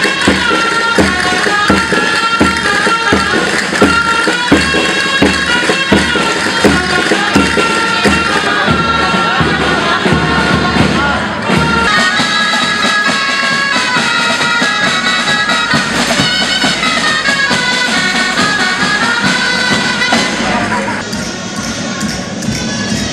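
Leonese street folk music: dulzainas, a reedy double-reed shawm, play a lively tune over a steady beat of drums and tambourines. About twelve seconds in the low drumbeat drops away and the dulzaina melody carries on.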